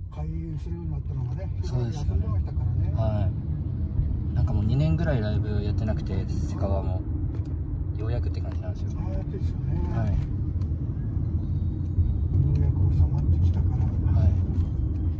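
Steady low rumble of a taxi on the move, heard from inside the cabin, growing louder near the end. Voices talk over it in short stretches.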